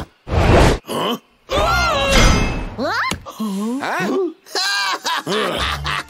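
A cartoon character's wordless vocal sounds: a string of separate grunts and groans with the pitch sliding up and down, one rising sharply about halfway through.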